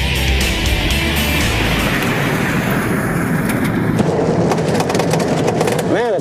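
Rock music for the first two seconds or so, then a military Humvee driving along a dirt track, its engine and tyres making a steady noise with scattered clicks.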